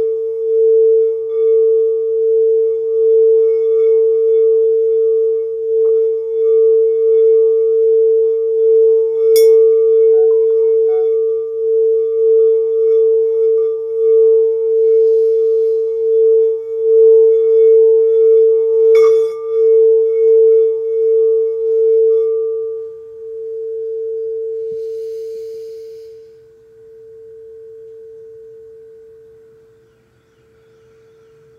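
Frosted crystal singing bowl tuned to A, sung by circling a wooden wand around its rim: one steady, pure tone that swells and dips slightly with each pass of the wand, with two sharp clicks of contact about nine and nineteen seconds in. About twenty-three seconds in the rubbing stops and the bowl rings on, fading.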